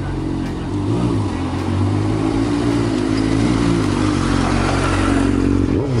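Motorcycle engine idling with a steady low hum that wavers slightly; near the end the pitch dips and then rises as the bike is given some throttle.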